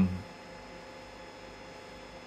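A man's drawn-out "um" ends just after the start, leaving quiet room tone with a faint steady electrical hum.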